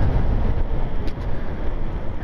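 Steady wind rumble on the microphone and road noise from a moving e-bike, with no motor whine standing out.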